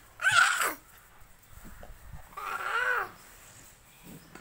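An animal calling twice: a short, loud cry about a quarter second in, then a longer, rising-and-falling call about two and a half seconds in.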